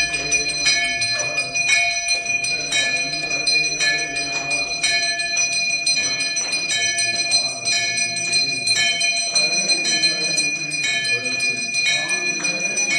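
A brass temple bell rung steadily during aarti, about one stroke a second, each stroke ringing on into the next, with voices singing underneath.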